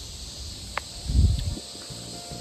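Cicadas droning steadily in the background. A short click comes just before a second in, followed by a brief low thump that is the loudest sound.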